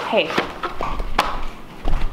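A person calls "Hey", followed by a few sharp taps spread through the next second and a half and a dull thump near the end.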